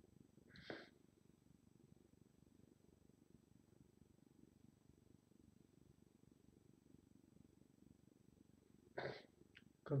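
Near silence: a faint, steady low rumble of background noise, with a brief soft hiss just under a second in.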